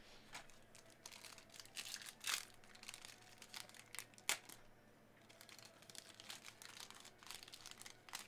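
Faint crinkling and tearing of a foil trading-card pack wrapper being ripped open by hand, with scattered crackles and two sharper snaps a couple of seconds apart.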